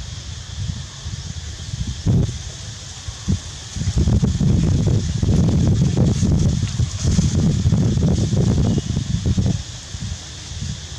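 Wind buffeting the microphone: a rough, gusting rumble that grows much louder about four seconds in and eases just before the end, over a steady high hiss.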